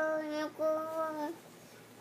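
A young child singing two long notes on one steady pitch, then stopping for about half a second.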